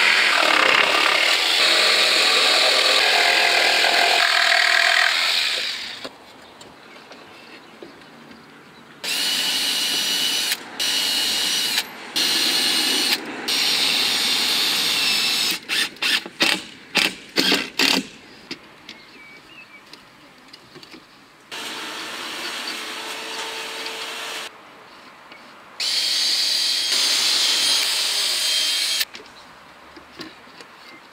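Cordless power tools running in a string of bursts while timber is cut to size and screwed in. A long saw cut through timber comes first. Then there are shorter runs and a quick stutter of on-off trigger pulls from a cordless driver sinking screws.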